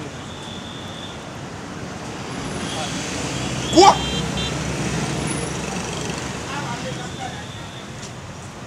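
Street background noise of passing traffic, a steady rumble and hiss that swells in the middle. About halfway through, a man gives one short loud shout that rises in pitch.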